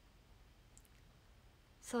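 Quiet room tone with one faint, very short click a little under a second in, then a woman's voice starts speaking near the end.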